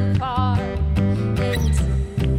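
A live worship band performing a Christmas carol, with sung vocals over acoustic guitar, drums and keyboard, keeping a steady beat.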